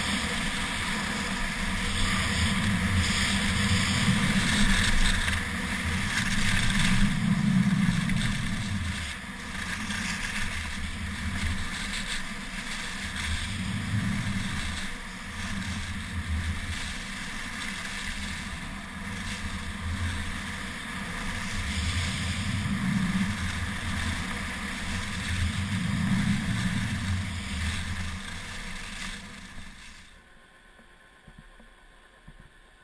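Wind rushing over a camera microphone during a downhill ski run, its low rumble swelling and easing every few seconds, over the steady sound of skis sliding on snow.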